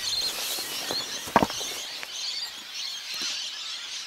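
Outdoor ambience of dry grassland with faint high-pitched chirping, and a single sharp click about a second and a half in.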